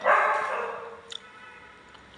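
A dog barking: one loud bark at the start that trails off over about a second.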